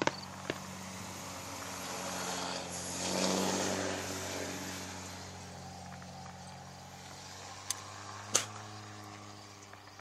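A vehicle engine running steadily close by, with a broad swell of rushing noise that rises to a peak about three seconds in and fades away, like a vehicle passing. A few sharp cracks cut through, the loudest about eight seconds in.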